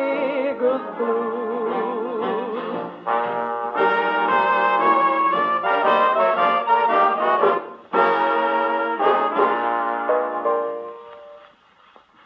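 Dixieland jazz band with trumpet and trombone playing its closing instrumental bars, played back from a 78 rpm Victor shellac record on an EMG Mark Xa acoustic horn gramophone. The band ends on a final chord that fades away near the end.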